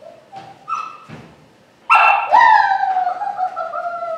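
A puppy gives a few short whimpers, then about two seconds in a loud bark that draws out into a long cry falling slowly in pitch. This is its bark alert at a person hidden in a crate.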